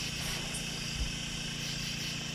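Steady low hum and hiss of background ambience, with one soft low thump about halfway through.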